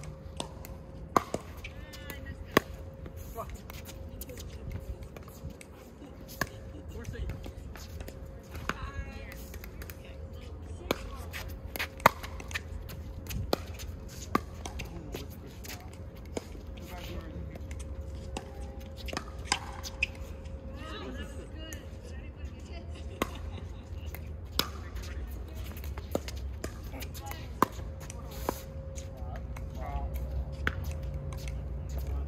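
Pickleball paddles striking the plastic ball in rallies: sharp pops at irregular spacing, a second to a few seconds apart, over a low outdoor rumble and a faint steady hum.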